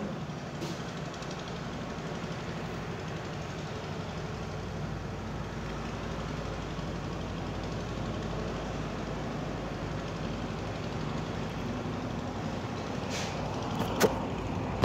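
A motor vehicle engine idling steadily, a low hum under a noisy hiss; the low hum grows a little stronger about four seconds in.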